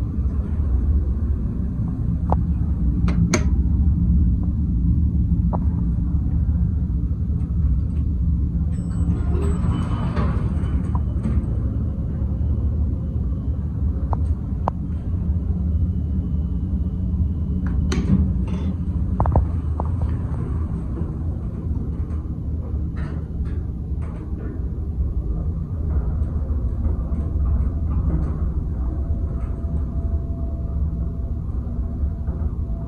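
Steady low rumble under a series of sharp clicks and knocks from a United States SoftTouch traction service elevator: its buttons being pressed and its doors working.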